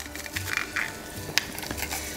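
Soft background music with a low bass line, under a few light squishes and clicks from a hand-held garlic press squeezing crushed garlic over a pan; one sharp click about one and a half seconds in.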